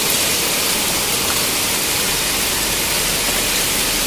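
Rain mixed with small hail falling, a steady, even hiss with no letup.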